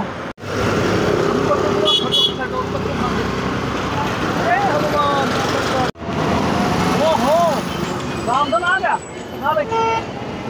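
Steady background noise like road traffic, broken by two brief dropouts. Short rising-and-falling pitched calls or toots are heard in the second half.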